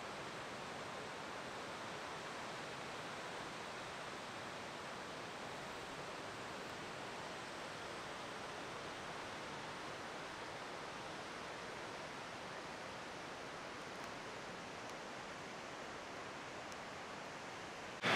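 Faint, steady rushing of distant cascading water, an even hiss with no breaks.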